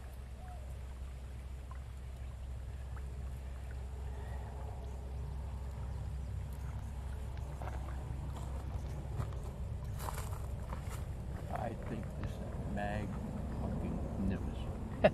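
Steady low rumble of wind buffeting the microphone, with a few faint clicks and a short faint pitched sound near the end.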